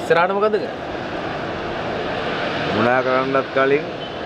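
A man's voice speaks briefly at the start and again about three seconds in, over a steady rushing background noise.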